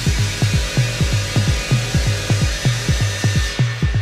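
Techno DJ mix: a steady four-on-the-floor kick drum at about two beats a second with a pulsing bass line, under a hissing noise layer that drops out near the end.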